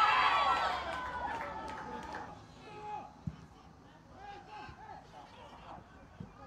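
Football stadium crowd and players: scattered shouting and calling voices, loudest at the start and then fading, with a single thump a little over three seconds in.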